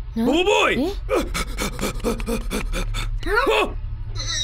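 Cartoon character voice gasping and making non-word vocal sounds, with a rapid run of clicks in the middle, over a steady low hum.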